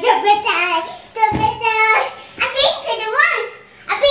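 A young child's high voice calling out in drawn-out, sing-song phrases, with a low thump about a second in.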